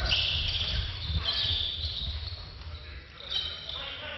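Basketball game sounds in a gymnasium: a ball bouncing on the hardwood court under a murmur of crowd noise.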